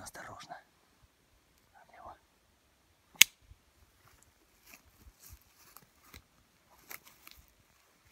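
A single sharp, loud click a little over three seconds in, with a brief low voice at the start and scattered faint ticks and rustles after it.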